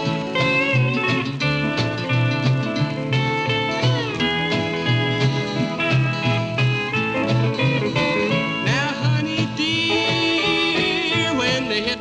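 Country string band playing an instrumental break between vocal verses: upright bass and rhythm guitar keep a steady beat under a lead line with sliding notes and a wavering, vibrato-laden passage near the end.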